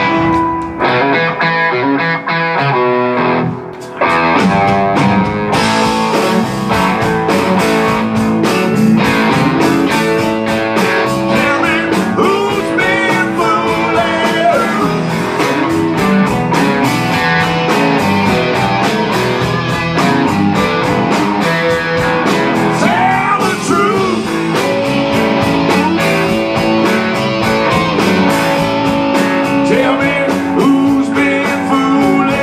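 Live blues-rock band: electric guitars alone at first, then drums and the rest of the band come in about five seconds in and play on loudly.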